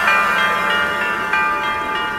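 Hip hop backing track in a break: a held chord of sustained notes that shifts pitch a few times, with no drums or bass under it.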